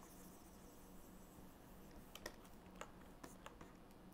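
Near silence: faint room hiss with a low steady hum, and a handful of faint, sharp clicks in the second half.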